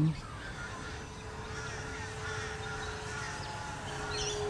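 Crows cawing now and then over a steady, noisy outdoor background.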